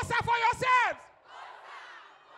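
A person yelling hype calls through a PA, a few long shouts that rise and fall in pitch during the first second, then a faint crowd murmur.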